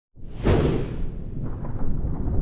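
A whoosh sound effect from a TV title sting: it sweeps up out of silence, peaks about half a second in, and trails off into a low, steady rumble.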